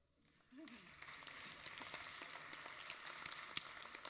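Audience applauding in welcome, the clapping starting about half a second in and going on steadily.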